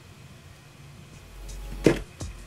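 A short swish that builds and ends in one sharp knock near the end.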